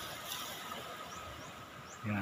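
Low, steady hiss of small waves washing onto a beach, with a faint short high chirp about a third of a second in.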